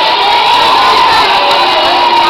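A group of children shouting and cheering together in one long, loud yell, answering a call to make themselves heard.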